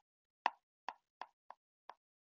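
Light, quick taps of a stylus tip on a tablet's glass screen during handwriting: five separate ticks about a third of a second apart, the first, about half a second in, the loudest.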